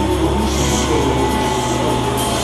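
Live hard rock band playing at a steady loud level, with electric guitar and bass, recorded from the audience.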